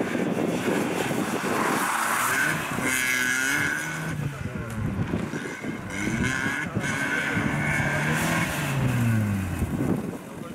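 Skoda Fabia hatchback's engine revving hard through a slalom, its pitch climbing and dropping with throttle and gear changes, with tyres squealing as the car slides round the gates. Near the end the revs fall away in one long drop.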